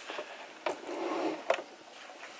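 Light handling noise in a small room: two sharp clicks about a second apart, with faint rustling between them.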